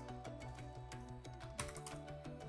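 Computer keyboard typing: a run of light key clicks, heard over quiet background music with steady held notes.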